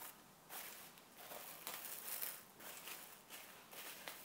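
Plastic cling film crinkling faintly in irregular rustles as it is stretched over a bowl and pressed down around the rim.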